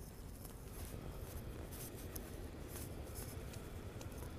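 Faint footsteps crunching through fresh snow on a sidewalk, a scratchy step every so often over a low rumble.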